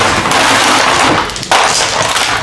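Ice cubes clattering and crunching against each other and the thin walls of a disposable aluminium foil pan as hands stir them around chicken, a dense continuous rattle with a brief break about one and a half seconds in.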